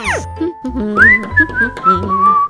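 A person whistling a short phrase: the whistle rises to a high note about a second in, then wavers and steps down. It plays over light children's background music with a steady beat.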